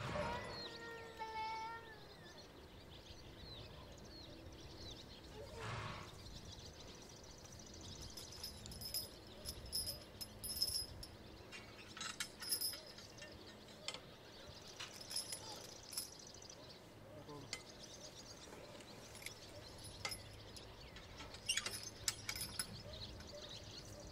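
Quiet outdoor ambience with birds chirping and a few sharp metallic clinks from the harness and hitch of a pair of Percheron draft horses being hitched. A short, high, wavering animal call sounds in the first two seconds.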